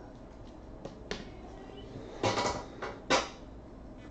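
Hard plastic clicks and clacks from a clear acrylic card stand and card holder being handled and set down on the table: two light clicks about a second in, a clattering burst a little after two seconds, and one sharp clack about three seconds in.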